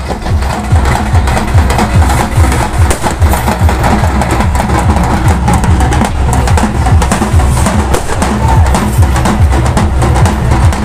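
Music driven by fast, loud drumming with a deep bass beat.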